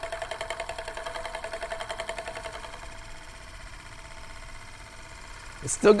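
Euler's Disk, a heavy metal disc, spinning down on its mirror base: a rapid, even whirring rattle with a steady ringing tone, slowly fading.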